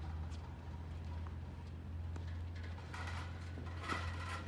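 Tennis ball struck by rackets and bouncing on a hard court during a rally: several short, sharp pops spaced irregularly, a second or less apart, over a steady low background hum.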